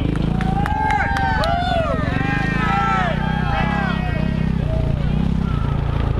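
A Suzuki RM-Z450 four-stroke motocross bike runs at low revs, its note dipping and picking up again several times, while fans at the fence shout and cheer over it.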